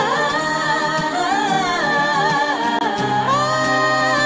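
A Punjabi song: a singing voice holds long, ornamented notes that bend up and down over sustained musical accompaniment, with deeper accompaniment notes coming in about three seconds in.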